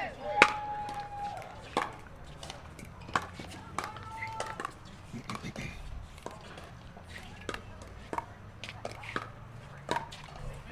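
Pickleball paddles hitting a plastic pickleball: a sharp pop from the serve about half a second in, then a rally of irregular pops, several a second at times, as the ball is traded at the net.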